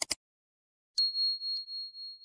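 Subscribe-button animation sound effects: a quick double click, then about a second in a single high bell ding that rings on with a wavering tone and slowly fades.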